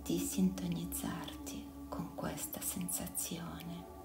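A voice whispering over soft ambient music that holds a steady low tone.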